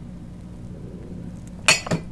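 A coffee cup clinks twice in quick succession near the end, over a steady low hum.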